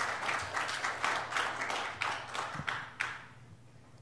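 Congregation applauding, the clapping dying away about three seconds in.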